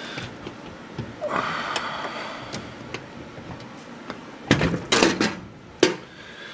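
Sheet-metal front door panel of a Carrier 59TN6 furnace being taken off: a scraping rattle about a second in, then several loud metal clunks near the end as the panel comes free.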